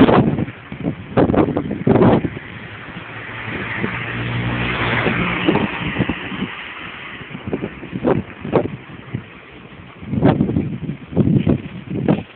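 A car passing on the street, its engine and tyres swelling and fading away over a few seconds midway. Irregular rustling thumps, louder than the car, come near the start and again near the end.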